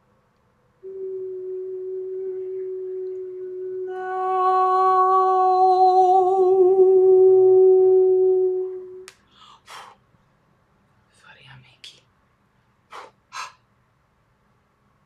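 A woman's voice toning one long sung note for about eight seconds, growing fuller about halfway through and wavering slightly near the end. A few short sharp mouth or breath sounds follow.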